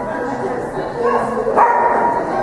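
A dog barking and yipping, with the loudest, high-pitched yip near the end, over crowd chatter.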